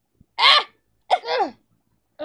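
A young person's voice making short wordless vocal sounds, each falling in pitch: a loud one about half a second in, then two more in quick succession about a second in.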